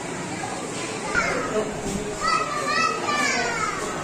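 Crowd of visitors talking with children's voices throughout, and a child's high, rising and falling calls in the second half.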